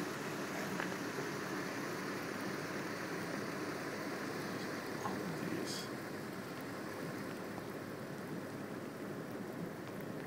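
Steady road noise inside a moving car, tyres hissing on wet pavement.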